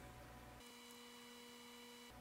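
Near silence: a faint steady electrical hum with a few thin tones, the low part of the hum dropping out about half a second in.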